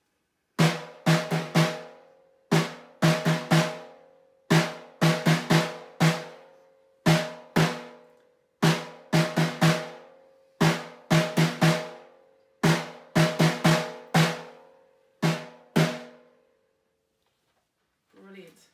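Snare drum struck with drumsticks, playing the taiko rhythm 'don doko don, don doko don, don doko don don, su don don' twice through, with a pause on each 'su'. Each stroke rings with a clear pitch, and the playing stops about two seconds before the end.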